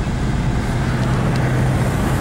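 Car driving in slow freeway traffic, heard from inside the cabin: a steady low engine hum under constant road and tyre noise.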